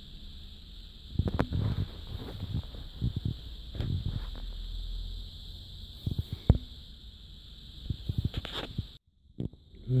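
Irregular close handling noise, soft knocks, rubs and clicks in several short clusters, over a steady high-pitched whine; the sound drops out briefly near the end.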